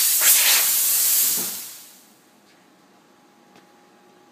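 Compressed air hissing loudly out of the air-bearing spindle's freshly cut air supply line. The hiss dies away over about two seconds as the pressure bleeds off.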